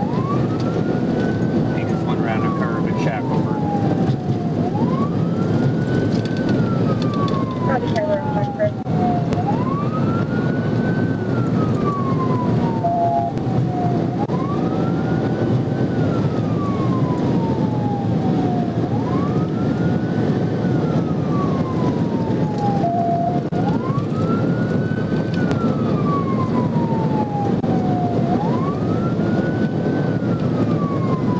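Police car siren on a slow wail, each cycle rising quickly and then falling slowly, about once every four to five seconds. It is heard from inside the pursuing cruiser over heavy road and wind noise at over 100 mph.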